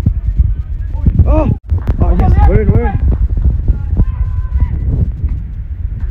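Men shouting on a football pitch, two loud rising calls about a second and two seconds in, over a steady low rumble, with a brief dropout in the sound between them.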